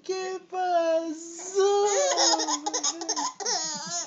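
A baby laughing in a high-pitched voice, drawn-out vocal sounds in the first half breaking into quick bursts of giggling laughter from about halfway through.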